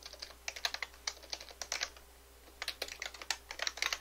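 Typing on a computer keyboard: quick runs of key clicks, a short pause a little past halfway, then more keystrokes.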